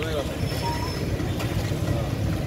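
Outdoor street background noise: a low, steady rumble with a brief voice at the very start.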